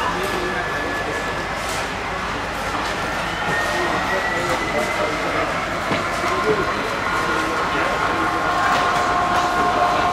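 Model Class 66 diesel locomotive running through a layout with its train of wagons. A thin whine rises slightly around the middle, and several steady tones come in about seven seconds in, over a constant murmur of people talking.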